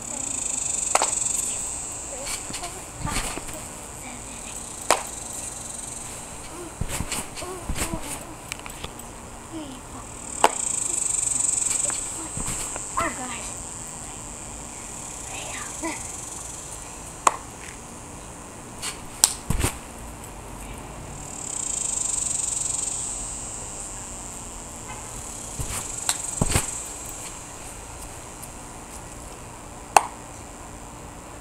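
Insects buzzing in a high, hissing drone that swells for a couple of seconds about every ten seconds, with scattered sharp claps and thumps from jumps and a handspring on a trampoline.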